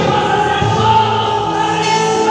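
Gospel worship song: a singer on a microphone through the church PA, with voices and musical backing, the notes held long and steady.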